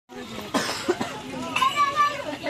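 A crowd of men and boys talking and calling out over one another, with a couple of short, sharp vocal bursts about half a second and a second in.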